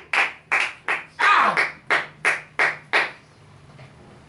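A man clapping his hands, a run of about nine sharp claps that slows and stops about three seconds in, leaving only low room noise.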